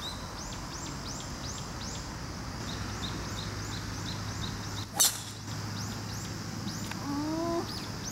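A driver strikes a golf ball off the tee with one sharp crack about five seconds in, the loudest sound. Throughout, a bird calls in short, high chirps repeated about three times a second.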